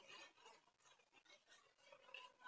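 Near silence, with a few faint soft squelches in the first half second from hands pressing wet chhena in a cotton cloth as it is rinsed with water.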